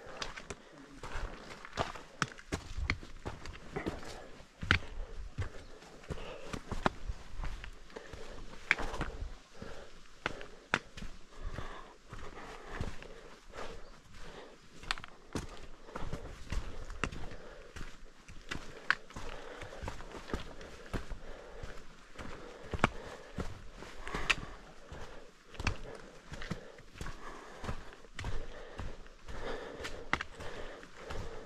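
Footsteps of a hiker climbing a rocky forest trail: irregular knocks and scuffs of boots on rock and gravel, at an uneven pace.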